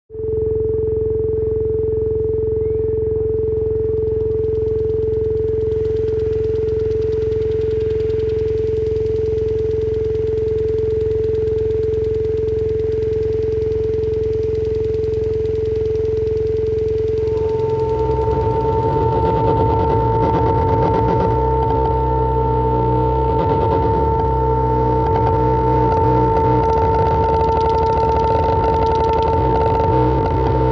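Electronic noise music through PA speakers: a steady tone over a low drone starts abruptly. About 17 seconds in, a second, higher steady tone joins, and the low end turns rough and dense.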